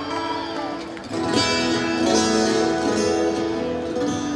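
Acoustic twelve-string guitar playing slow ringing chords over the PA, heard from within the crowd; a fresh chord is struck about a second in.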